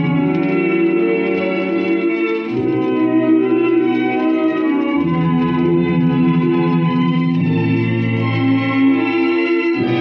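A 78 rpm shellac record playing on a record player: orchestral music with held chords that change about every two to three seconds.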